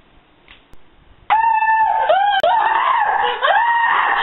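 A girl screaming: after a quiet first second, a run of loud, high-pitched screams starts suddenly, held and bending in pitch.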